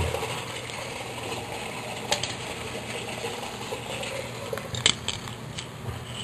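Sump pump running with a steady mechanical hum. Two sharp knocks sound over it, one about two seconds in and a louder one near the end, as a plastic cap is handled at a clay drain pipe.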